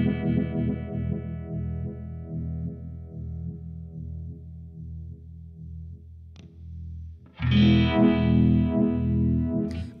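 Electric guitar chord played through a Uni-Vibe-style phasing pedal, ringing and slowly fading with a quick, regular throb. A pedal footswitch clicks about six seconds in, and a second chord is struck about a second later and rings on with the same throb.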